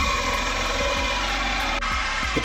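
A power drill motor running steadily with a whine; the sound shifts slightly near the end.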